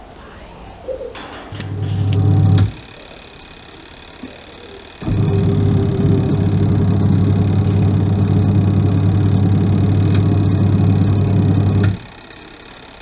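Top-loading washing machine running its wash cycle with a grey fleece blanket soaking in the tub, its motor giving a steady mains hum. The hum runs briefly near the start, stops for a couple of seconds, then starts again about five seconds in and holds until it cuts off just before the end.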